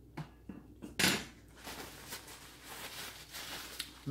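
Handling noises at a table: a few light clicks, a sharper knock about a second in, then a stretch of paper napkins crinkling and rustling.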